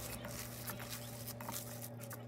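Faint squishing and patting of bare hands kneading a ground beef mixture in a glass bowl, with small irregular clicks over a steady low hum.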